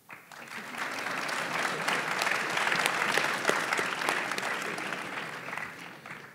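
Audience applauding. The clapping breaks out suddenly, fills in over the first second, and dies away near the end.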